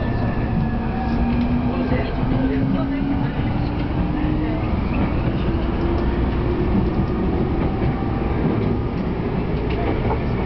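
Electric commuter train accelerating away from a station, heard from inside the car: a steady rumble of wheels on rails under a motor whine that rises slowly in pitch.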